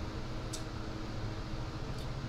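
Steady low-pitched background hum with a faint steady tone in it, and a brief faint hiss about half a second in.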